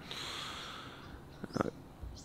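A man taking a breath close to the microphone, lasting about a second.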